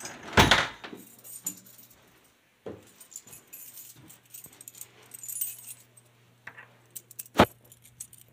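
A door and its brass doorknob being handled: metal jingling and rattling with scattered knocks, a thud just after the start and one sharp knock near the end, over a faint low steady hum.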